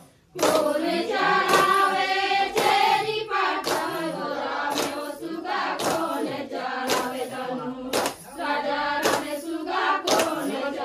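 Women singing a Chhattisgarhi Suaa folk song in chorus, keeping time with hand claps about once a second. The singing cuts out for a moment right at the start, then carries on.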